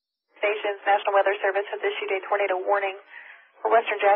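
A voice speaking over emergency-services two-way radio, thin and narrow-sounding, starting about a third of a second in after silence, with a brief pause near the end before the talk resumes.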